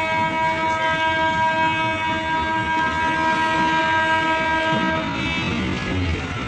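Train horn sounding one long, steady blast that cuts off about five seconds in, over the rumble of the train running on the rails.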